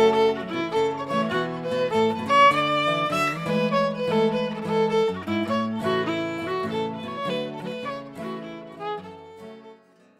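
Fiddle and acoustic guitar playing an Irish jig, the fiddle carrying the melody over the guitar's chords. The music dies away near the end.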